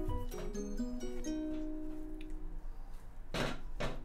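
Background music: a light plucked-string tune in a ukulele-like sound, with one note held for about a second. Near the end comes a brief rushing noise.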